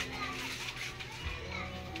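Background chatter and children's voices, with faint music underneath.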